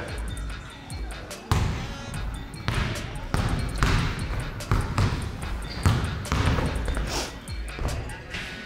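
Basketball dribbled on a hardwood court floor: a run of separate bounces, roughly a second apart and irregular, over background music.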